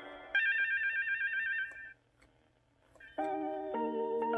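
Ideal Talking Big Bird toy sounding its page-turn signal through its speaker: a rapid warbling trill tone lasting about a second and a half, the cue to turn to the next page of the book. After a second of silence, sustained musical notes start about three seconds in.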